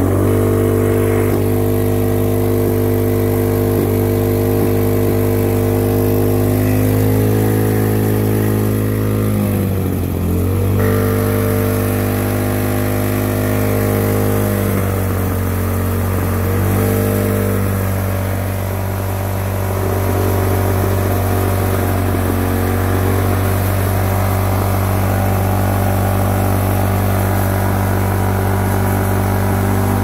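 Snowblower's Briggs & Stratton Intek Snow single-cylinder engine running loud and steady just after starting. Its speed sags sharply and recovers about ten seconds in, and dips twice more a few seconds later before settling. The machine had a choke-and-run problem.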